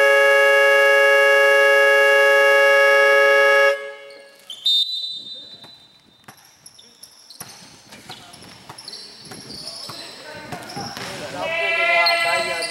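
Electronic scoreboard buzzer sounding one long steady tone that cuts off suddenly about four seconds in, signalling the end of the third quarter. A short high whistle follows, then scattered basketball bounces on the hardwood court and voices near the end.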